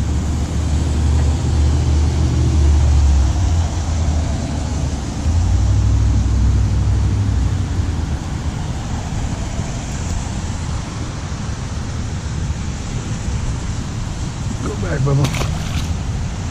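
Wind buffeting the microphone: a steady rush with heavy low rumbling gusts through the first half. Near the end, a brief splash as the released pleco drops into the canal water.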